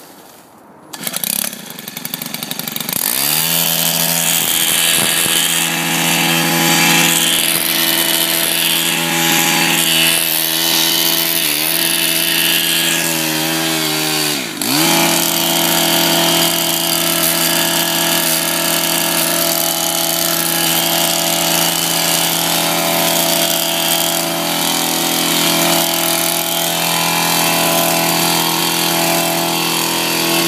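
Stihl KM 130 R KombiMotor engine driving an HL-KM articulating hedge trimmer attachment while cutting into blackberry brambles. The engine revs up about three seconds in and then runs at high speed, dipping briefly twice near the middle.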